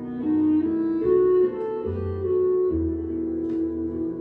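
Vinyl record playing through Tannoy Autograph loudspeakers and heard in the room: an instrumental passage of the song, with held melody notes over a sustained bass line.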